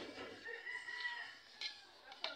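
A rooster crowing once, faintly, in one drawn-out call of about a second.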